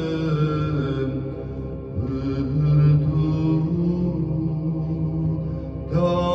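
A man chanting a Romanian Orthodox liturgical hymn into a microphone, amplified through a loudspeaker, in long held notes that slide slowly from pitch to pitch.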